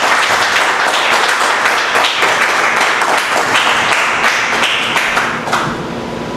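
Audience applauding: a room of people clapping together, the applause thinning out near the end.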